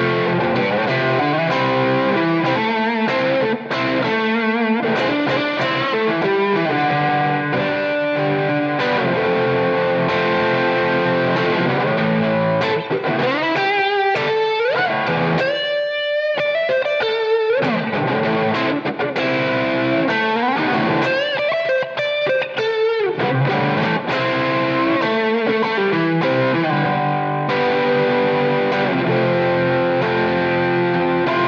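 Electric guitar, a Fender Stratocaster, played through a close-miked Blackstar combo amp. The player mixes chords and single-note lines, with string bends around the middle and again about two-thirds of the way through.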